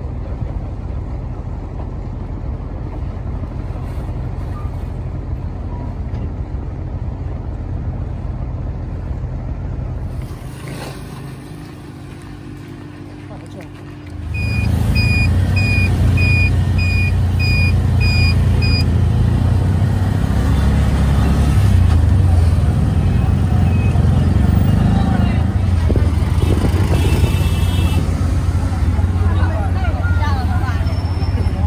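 A boat's engine running steadily on open water, then, after a cut, the louder engine of a tuk-tuk driving through street traffic. Early in the tuk-tuk ride there is a run of short electronic beeps, about two a second for some four seconds.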